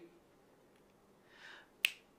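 A single sharp finger snap near the end.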